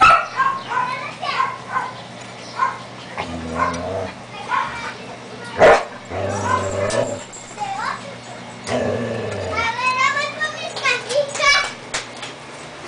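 Five-week-old Siberian husky puppies yipping and whining in short high cries, some rising in pitch, with a longer run of whines near the end. A low human voice murmurs between the cries, and there is one sharp knock about halfway.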